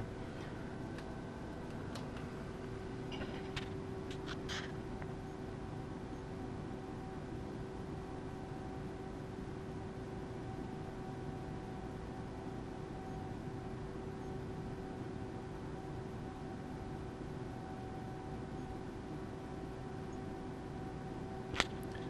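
Steady electrical hum with a faint whine over a fan-like hiss from the amplifier test bench, while the amplifier drives a 2-ohm dummy load during a certified power run. A few faint clicks come in the first few seconds.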